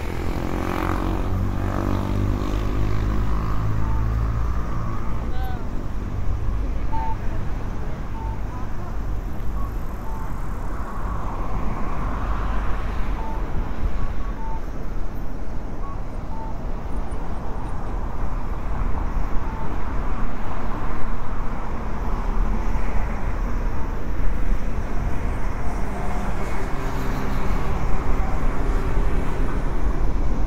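Road traffic on a wide city road: a steady rumble of cars and buses passing. One vehicle goes by close in the first couple of seconds, its engine pitch falling as it passes.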